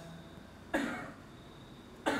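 A single short cough from a person, about three-quarters of a second in, fading quickly into quiet room tone.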